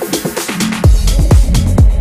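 Techno track in a DJ mix: a steady four-on-the-floor kick drum, about two beats a second, with hi-hats. About a second in, a heavy bass line comes in under the beat.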